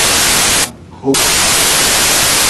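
Loud, harsh static hiss that cuts in suddenly, breaks off briefly about two-thirds of a second in, and comes back about a second in, drowning out a man's speech. It is an audio fault in the recording, not a sound in the room.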